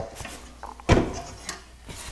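Light knocks and clicks of a track-saw guide rail and its metal parallel-guide brackets being handled and set down on a plywood panel, the sharpest knock about a second in and a couple of smaller clicks after.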